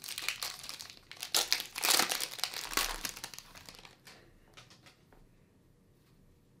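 A 2022 Panini Prizm Football pack's wrapper being torn open and crinkled: dense crackling for about three and a half seconds that thins out to a few light clicks.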